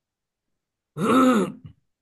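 One short vocal sound from a person about a second in, lasting about half a second, its pitch rising and then falling, with dead silence before it as on a noise-gated video call.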